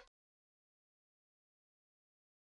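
Dead silence: a loud sound cuts off abruptly right at the start, then nothing at all.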